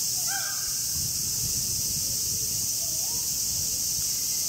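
A crow cawing once, with a fainter call near the end, over a steady high-pitched insect drone of summer cicadas.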